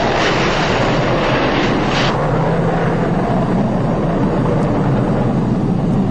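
Film sound effect of a nuclear blast and fireball: a loud continuous rumble with a rushing hiss that drops away about two seconds in, leaving a deeper rumble.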